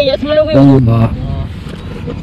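Excited, high-pitched voices talking and exclaiming, then a low rumble of background noise underneath in the second half.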